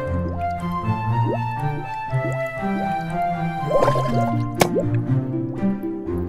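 Intro theme music with underwater bubble sound effects: short rising bubble pops and drips over the melody, a burst of bubbles near four seconds, and one sharp click shortly after.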